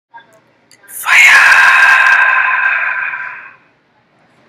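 A loud, high-pitched scream starting about a second in, held on one steady pitch for about two and a half seconds and fading out, after a few faint clicks.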